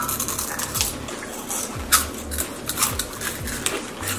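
Background music with a steady beat, and a few short crunches of crisp onion-ring snacks being bitten and chewed.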